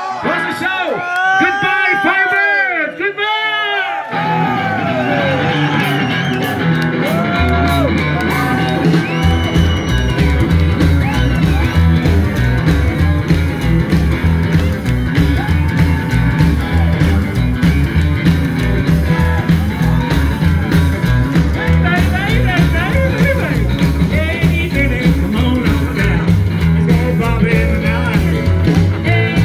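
Live rock-and-roll band on stage: a voice sings long sliding notes almost alone, then the band comes in about four seconds in. From about nine seconds a steady bass-and-drum beat drives the song.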